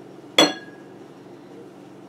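A small glass bowl clinks once, about half a second in, with a short glassy ring that dies away.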